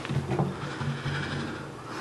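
Handling noise of an Eros 612 Nevada acoustic 12-string guitar being picked up and settled into playing position: light knocks and rubbing against its wooden body, with a small knock about half a second in.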